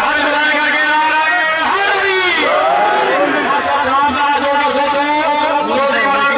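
A man speaking continuously, the match commentary, with other voices overlapping at times.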